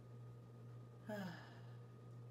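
A woman's short sigh about a second in, voiced and falling in pitch, over a steady low hum.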